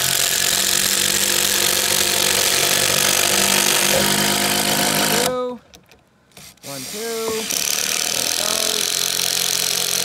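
Cordless drills running under load, driving long timber screws into log fence braces. They stop about halfway through, the motor whine dropping away to near quiet for just over a second, then spin back up and carry on.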